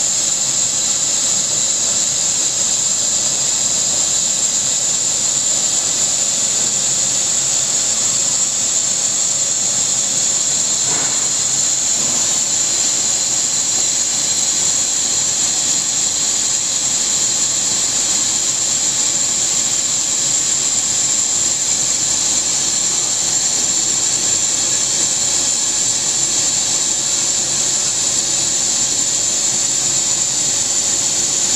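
NDJ laser cutting machine cutting MDF, running with a steady, high-pitched hiss of rushing air and fans.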